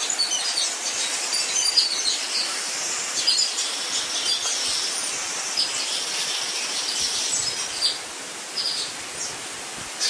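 Birds chirping: many short, high calls in quick succession over a steady hiss, thinning out about eight seconds in.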